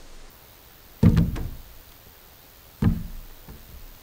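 Two heavy wooden thumps, about two seconds apart, each dying away with a short hollow ringing: timber logs knocking against other logs.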